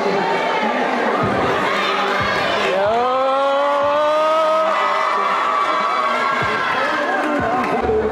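Crowd cheering over background music as the athlete enters, with one long voice note that glides up about three seconds in and is held for about four seconds.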